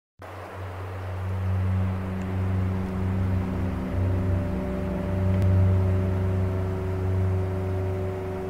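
Steady low electrical hum with a few higher overtones over a bed of room noise. It holds constant with no strikes or plucks.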